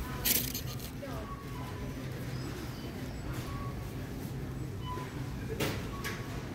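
Supermarket background: a steady low hum with indistinct voices. Two short rattles stand out, one just after the start and one near the end, from a loaded shopping cart being pushed.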